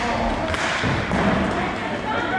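Thuds and knocks of roller hockey play: the puck, sticks and players hitting the rink floor and boards, with players' voices calling out in the rink.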